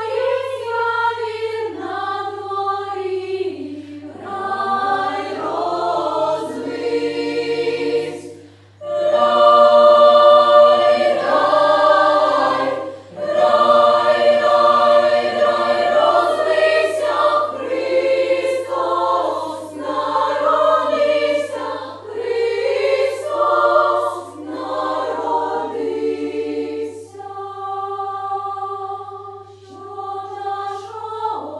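Children's choir singing a Ukrainian carol in several parts. The singing breaks off briefly about nine seconds in, then comes back at its loudest, over a steady low hum.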